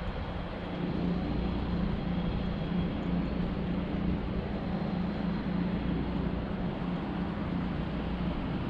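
Vehicle moving steadily across a steel truss bridge: a constant low engine drone under even road and wind noise.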